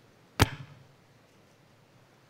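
A single sharp knock on a headset microphone, handling noise as it is touched, with a brief ringing tail; faint steady hiss around it.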